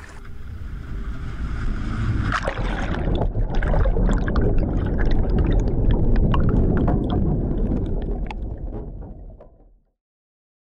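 Underwater churning and bubbling of pool water around a thrashing body: a deep rushing wash with fine crackling bubbles. It swells over the first few seconds and fades out near the end.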